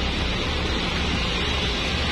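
A steady hiss with a constant low hum underneath, even throughout, with no distinct knocks or events.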